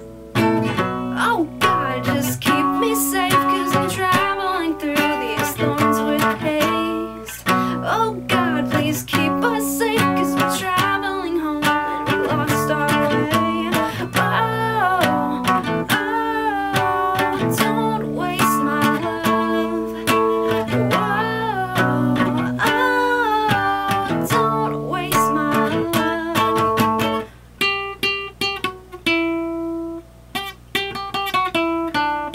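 Acoustic guitar strummed in chords, with a woman's voice singing along. Near the end the strumming gives way to a few lighter picked notes.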